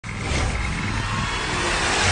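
Intro sound effect of a low rumble under a noisy whoosh that swells steadily in loudness, with a faint high tone in the first second.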